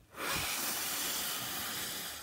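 A man forcefully blowing out one long breath through pursed lips, a steady hiss that starts about a quarter second in and begins to fade near the end. It is a full exhalation after a maximal inhalation, the vital capacity manoeuvre.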